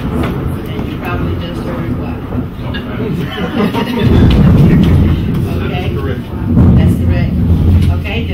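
A loud, deep rumble that swells about four seconds in and again near the end, with people murmuring and laughing over it; it is a noise heard through the room that makes people start.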